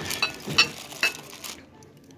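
A few light clinks and knocks, about five in the first second and a half, as a ceramic piece is handled against a chrome wire store shelf and the items on it.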